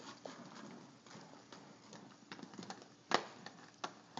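Inline skates on a concrete sidewalk: faint rolling with irregular clacks, one louder about three seconds in.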